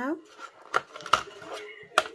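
Small gel polish bottles being handled in and lifted out of a black plastic packaging tray, giving a few short sharp clicks and knocks, the sharpest right at the end.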